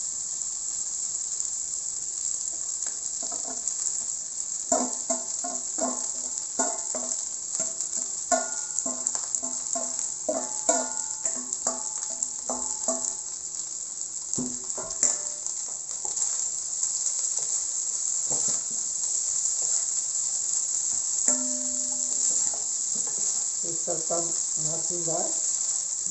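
Fried rice sizzling steadily in a hot wok, with the wooden spatula scraping and knocking against the pan as the rice and shredded cabbage are stir-fried.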